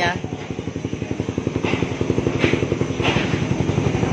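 Suzuki Raider R150 Fi's single-cylinder engine idling through an Apido open pipe with the silencer removed, a quick, even exhaust beat with a few louder puffs.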